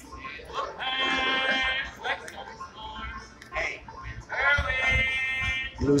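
Live bluegrass busking from a street banjo player, with two long held notes standing out over the playing, one early and one late.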